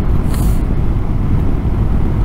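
Steady rush of wind on the camera microphone over the riding noise of a BMW R 1250 GS motorcycle travelling at road speed, with a short hiss about half a second in.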